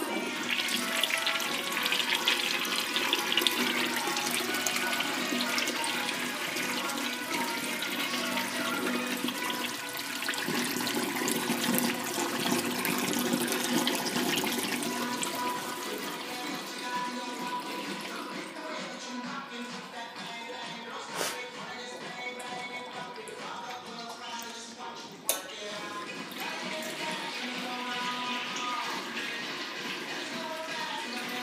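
Toyotoki U29 porcelain stall urinal flushing: water pours from the spreader holes along its top and runs down the bowl. The flow is strongest for the first fifteen seconds or so, then fades.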